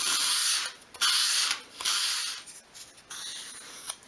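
Edge of a thin piece of wooden sheet stock being sanded on sandpaper at a 45-degree angle to bevel it: three strong sanding strokes about a second apart, then a weaker one, stopping about three seconds in.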